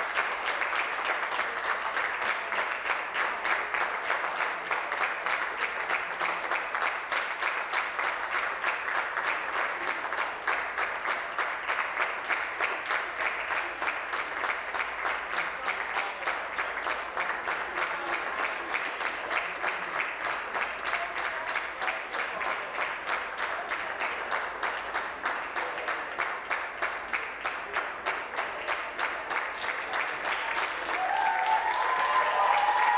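Many people clapping, a dense and steady sustained applause with no break.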